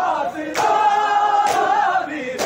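A large crowd of men chanting a noha together, holding one long note through the middle, over unison matam: bare hands striking bare chests in two sharp collective slaps, about half a second in and again about a second later.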